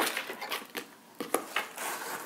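Tissue paper rustling and crinkling in a cardboard box as a hand rummages through it, with a few light clicks and taps of items being handled.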